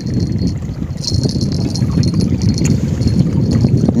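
Wind buffeting the microphone on an open boat: a loud, irregular low rumble with no steady pitch.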